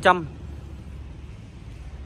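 A man's voice trails off at the very start. Then a steady low hum with faint background noise fills the pause.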